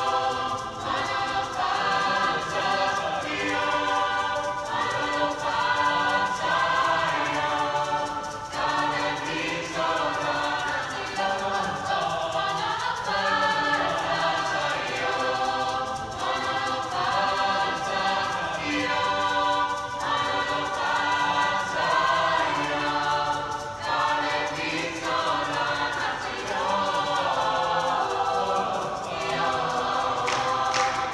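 Mixed choir of young voices singing a cappella, several parts in harmony.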